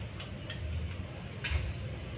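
A few light, irregular clicks from hair-styling tools being handled on a customer's hair, the loudest about one and a half seconds in with a short rustle, over a steady low background rumble.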